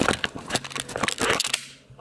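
Handling noise of a video camera being taken off its tripod: a quick run of sharp clicks and knocks from the camera and mount, dying away near the end.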